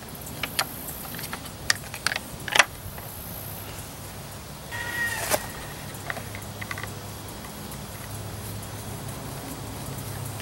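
Light clicks and taps of a clear plexiglass plate being handled and fitted over an outboard's bare cylinder head, several in the first three seconds, over a low steady hum. About five seconds in, a short animal call.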